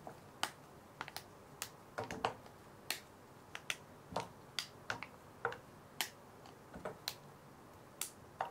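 Pieces of milk chocolate being handled and dropped into a small pan of cream: an irregular run of small sharp clicks and snaps, about two a second.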